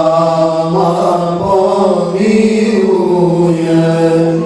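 Men chanting an Islamic devotional song (nasheed) into microphones, amplified, in slow, long drawn-out notes over a steady held lower note.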